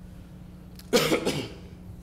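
A person coughing once into a meeting-room microphone about a second in, a short harsh burst that trails off with a smaller second push.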